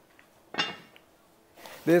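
A heavy enameled cast-iron lid set down on a Dutch oven: one metallic clink about half a second in that rings briefly, followed by a faint tick.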